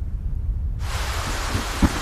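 Heavy rain comes in suddenly a little under a second in, over a deep continuous rumble of thunder: a rainstorm.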